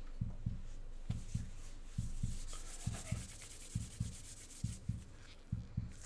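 Nitrile gloves being pulled on, the thin rubber rubbing and stretching against the hands, busiest in the middle of the stretch. Underneath, a faint low thumping comes in pairs about once a second.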